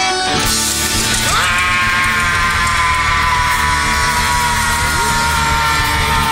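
Live rock band: the chugging rhythm breaks off at the start, then one long note is held for about four seconds, sinking slightly in pitch, over a steady bass and drums.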